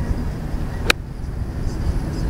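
A golf club striking a ball once: a single sharp click about a second in, over a steady low rumble.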